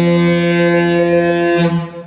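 The Disney Fantasy cruise ship's musical horn holding one long, loud, low note of a tune, which stops abruptly near the end.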